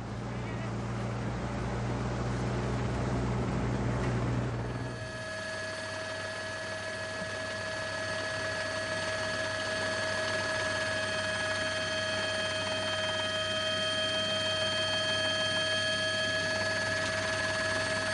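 Race-broadcast field sound: a low engine hum and rushing noise from the camera motorbike following the bunch. About five seconds in it cuts abruptly to the steady, several-toned whine of the television helicopter, which holds to the end.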